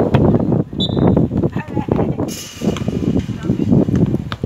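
Indistinct voices of people talking and calling out on the sidelines of a football match, with a short high-pitched tone about a second in and a hiss joining a little past halfway.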